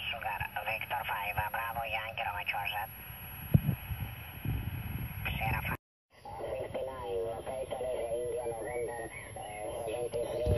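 Distant radio amateurs' voices received on the Soviet R-323 tube receiver and heard through its loudspeaker: thin, narrow-band speech over static hiss. The voice breaks off into hiss for a couple of seconds in the middle. A single low knock comes about three and a half seconds in, and the sound drops out briefly around six seconds before another voice comes in.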